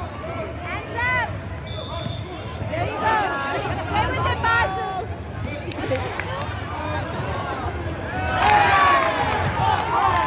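Youth basketball game in play in a gym: players and spectators shouting, with the ball bouncing on the hardwood court. The voices are loudest near the end.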